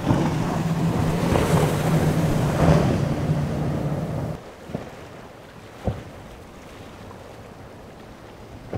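The quint Mercury Racing 450R supercharged V8 outboards of an MTI center-console raceboat running hard at speed: a steady low engine drone under the rush of spray and wind, which cuts off abruptly about four seconds in. After that there is quieter water and wind noise with a couple of brief thumps.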